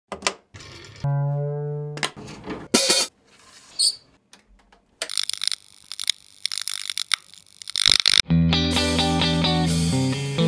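A cable plug pushed into the input jack of a Goodsell guitar amplifier: sharp pops and clicks, a steady buzzing tone lasting about a second, then bursts of static-like noise. About eight seconds in, the band starts playing rock with electric guitar and drums.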